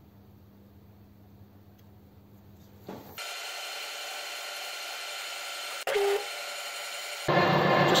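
A faint steady hum for about three seconds. Then, after a sudden change, a Wilson metal lathe runs with a steady whine of several tones from its motor and gearing, and a brief lower tone dips in about three seconds later.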